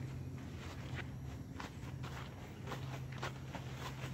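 Horse's hooves walking through deep dry leaf litter: an uneven crunching and rustling of leaves at each step, about two to three steps a second.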